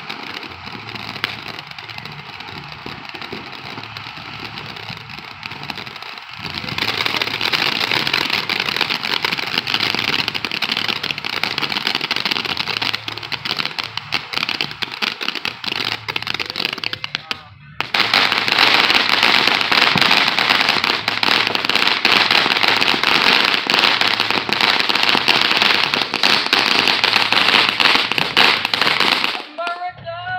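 Ground fountain firework spraying sparks: a continuous hissing crackle. It grows louder about six seconds in, cuts out for a moment just past halfway, comes back louder still, and dies away right at the end.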